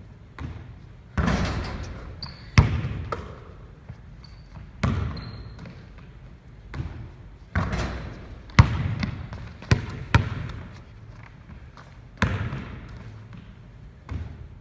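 A basketball bouncing on a hardwood gym floor during shooting practice: about nine sharp thuds at uneven spacing, each followed by the long echo of a large gym hall.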